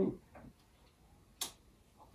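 The last of a spoken word, then a quiet room with a single short, sharp click about one and a half seconds in.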